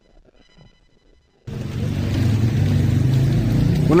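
Rain falling with a steady low rumble beneath it, starting suddenly about a second and a half in after near silence.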